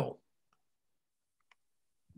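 The end of a man's spoken word, then near silence broken by a faint single click about one and a half seconds in.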